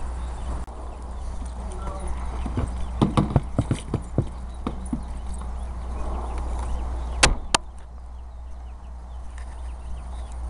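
A steady low rumble with a run of irregular knocks and clicks about three seconds in, then two sharp clicks close together about seven seconds in.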